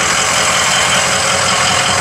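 Ford F350's 6.0 Powerstroke V8 turbodiesel idling steadily.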